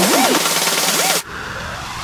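Psytrance track in a breakdown with no kick drum: a synth line swoops up and down over a hiss of noise, then cuts to a quieter passage a little over a second in.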